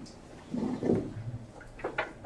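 Meeting-room background noise: a steady low hum, a short muffled sound around the middle, and a sharp click near the end.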